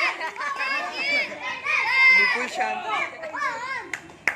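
Children's voices shouting and cheering over one another, high-pitched and overlapping, throughout a sparring bout.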